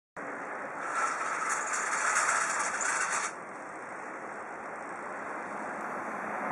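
Steady outdoor background noise of a town, a continuous hiss with no distinct events. A louder rushing layer sits on top for the first few seconds and cuts off suddenly a little over three seconds in.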